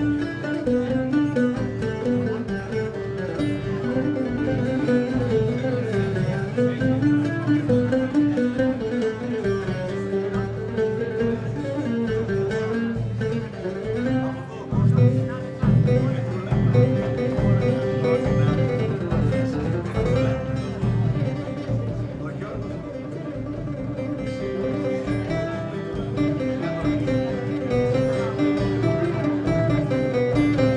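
Instrumental passage: an oud plays a flowing melody over a large hand-struck frame drum. The drum's low beats are loudest about halfway through.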